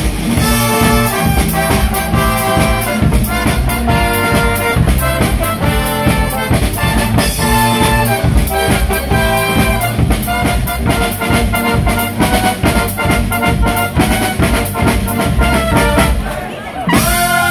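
Live brass band playing an upbeat tune: trumpets and trombones over a bass drum and cymbals keeping a steady beat.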